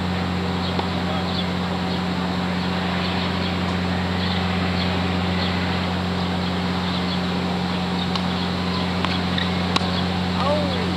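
Tennis balls struck by a racket or bouncing on a hard court: a few sharp knocks, one about a second in, one about eight seconds in and the loudest just before the end, over a steady low hum and faint high chirps.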